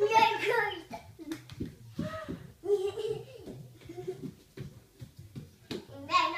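A young child's high voice vocalising in short, wordless bursts, babbling and half-singing.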